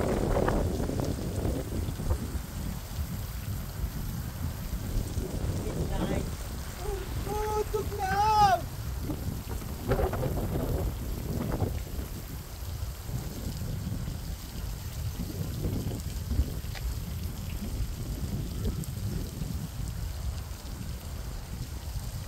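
Water from a fountain's jets splashing into its stone basin, a steady hiss of falling water, with wind rumbling on the microphone.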